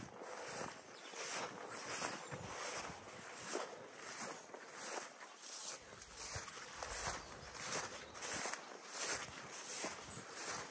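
Footsteps swishing through long grass, about two steps a second.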